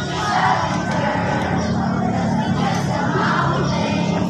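A large group of people singing together in unison, holding long notes, with music under it.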